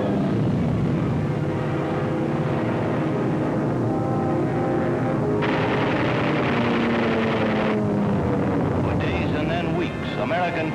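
Aircraft engines drone steadily on the film soundtrack, their pitch sliding slightly lower near the middle. About five and a half seconds in, a harsh rattling burst of machine-gun fire starts suddenly, lasts about two seconds and cuts off.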